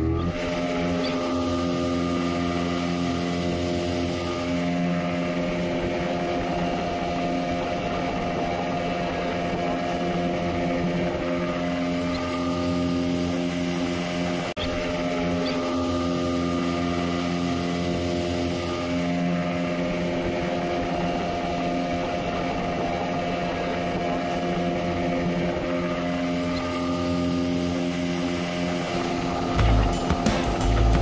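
Speedboat outboard motor running at a steady speed, a continuous drone, over the rush of water and wind along the hull.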